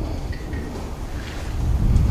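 Low wind rumble on the microphone, growing louder near the end.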